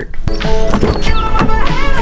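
Background music with a beat and melodic lines, starting abruptly just after the last spoken word.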